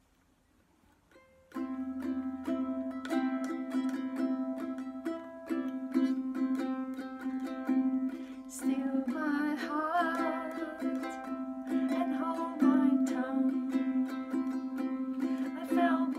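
Wilkinson concert ukulele strummed in a steady rhythm, starting about a second and a half in after a moment of near silence.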